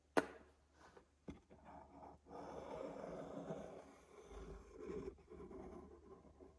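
Quiet handling sounds at a workbench while a wooden frame is being glued. There is a sharp tap near the start and a fainter knock about a second later, then about three seconds of soft rustling and scraping.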